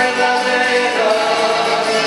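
Chilean cueca music with voices singing, playing steadily.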